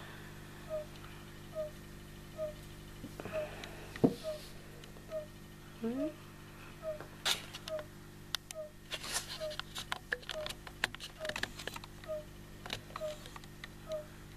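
Frogs calling in the background: one short chirp repeated at a steady pace, slightly faster than once a second. In the middle a cluster of crackling clicks comes from handling.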